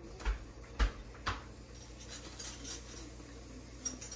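Three soft knocks about half a second apart, then faint kitchen handling noise, as a plastic bottle and utensils are handled over a pan.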